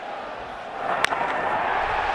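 A single sharp crack of a wooden baseball bat squarely hitting a pitch about a second in. The crack sends a ball into the gap for a two-run double, and the ballpark crowd's noise swells into a rising roar.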